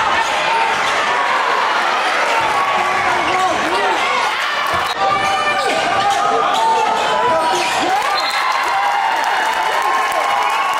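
Basketball game sound in a gym: crowd chatter and shouts over a steady din, with short squeaks of sneakers on the hardwood court and the ball bouncing.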